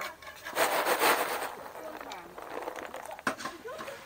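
Roasted coffee beans rustling and sliding over a woven bamboo tray as it is tipped and handled. There is a loud rustle about half a second in, then quieter shuffling and a sharp click near the end.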